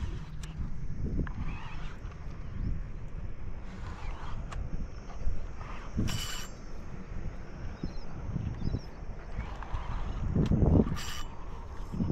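Wind buffeting an outdoor camera microphone in a steady low rumble, with scattered clicks and a couple of brief louder knocks or rustles from handling gear.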